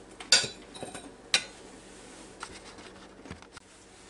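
A metal fork clinking against a ceramic plate. There are two sharp clinks within the first second and a half, then a few fainter taps.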